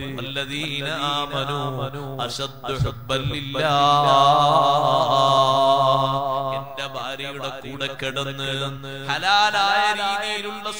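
A man's voice chanting in a melodic recitation style, with one long, wavering held note in the middle.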